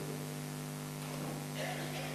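Steady electrical mains hum from the sound system, with a faint rustle near the end.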